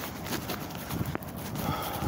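Footsteps of a person walking in toe-post sandals on a paved path: irregular slaps and scuffs over a low rumble.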